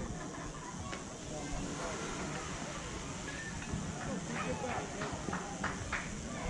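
Indistinct voices of spectators and players at a youth baseball field, talking and calling out faintly, with a couple of brief sharp knocks.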